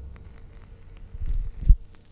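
Faint crackling hiss of a lit cigarette burning, played as a sound effect, over a low steady hum. A low rumble swells a little past one second and ends in a single deep thud near the end.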